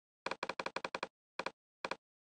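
Computer mouse clicking: a quick run of six clicks, then two more spaced out near the end, each a short press-and-release double tick. They are stepping up the level of Smaart's pink-noise signal generator.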